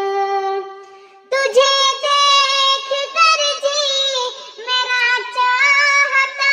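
High singing voice in a naat-style devotional song: an earlier held note fades out, then about a second in the high voice enters with long, wavering held notes.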